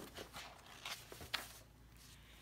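A picture book being handled, its pages moving: a sharp click at the start, then a few faint rustles and taps over the next second and a half.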